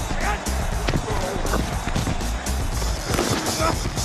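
Background music under short shouts from the field, with sharp knocks of football pads and helmets colliding as the linemen engage.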